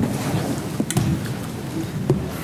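Rustling and shuffling of a roomful of people sitting back down in wooden folding auditorium seats, with a couple of sharp seat knocks about a second in.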